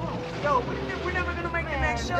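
Voices talking over a steady low rumble from a vehicle engine.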